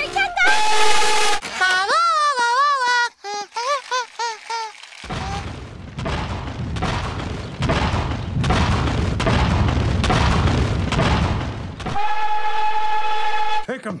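Nickel Plate Road No. 587's cracked steam whistle sounding in steady blasts, one about half a second in and one of nearly two seconds near the end. Between them come wavering tones and a long stretch of loud rumbling noise.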